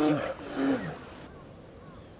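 Brief voiced calls, falling in pitch, during the first second.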